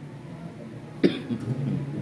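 A single cough about a second in, followed by faint low voices.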